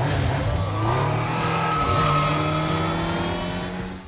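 Motorcycle engine revving: its pitch climbs over the first couple of seconds, then holds steady and fades near the end.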